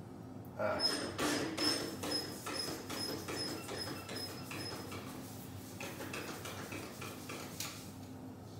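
Backpack sprayer wand spraying liquid onto a concrete floor: a hiss of spray with short clicks, strongest in the first couple of seconds and then tapering. A thin squeak repeats about three times a second through the first half.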